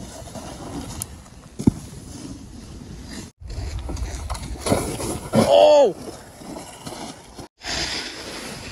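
Snowboard sliding and scraping over packed snow, a steady hiss broken by two short gaps. About five and a half seconds in comes a short shout that rises and falls in pitch.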